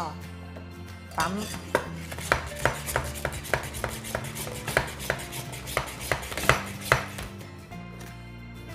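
Hand-pump milk frother being pumped in a stainless steel pitcher, its plunger clacking in a fast rhythm of about three strokes a second as it whips milk into foam.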